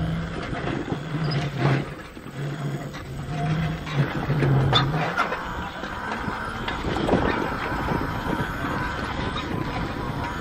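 Electric bicycle riding over a sandy dirt track: a low hum from its 1000-watt electric drive, wavering in pitch and stopping about halfway through, over rough tyre and frame noise. A few sharp knocks come from the unsuspended bike jolting over bumps.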